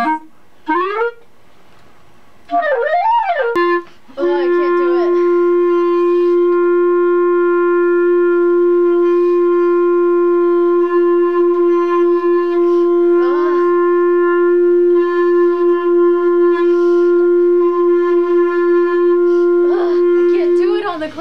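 A clarinet holds one long, steady note on open G for about sixteen seconds without a break, kept going by circular breathing. Small wavers in the tone give away the moments when the player breathes in through the nose.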